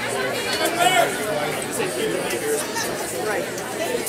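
Indistinct chatter of several people in a bowling alley, with a few sharp clicks.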